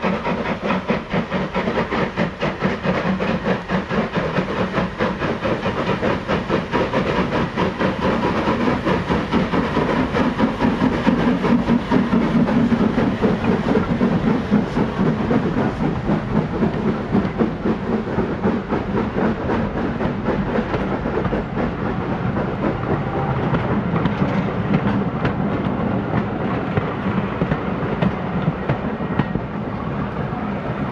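Steam locomotive hauling a train of coaches past at close range: rapid, rhythmic exhaust chuffs, loudest about a third of the way in as the engine goes by, then the coaches clattering over the rail joints and slowly fading.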